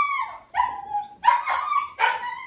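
Labradoodle puppy yapping: about three high-pitched barks in quick succession, the last one drawn out a little longer.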